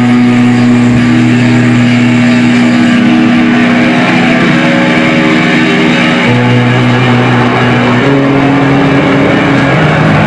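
Live rock band holding long, sustained electric guitar notes over a droning low note, the chord changing about six seconds in and again about eight seconds in, loud in the room.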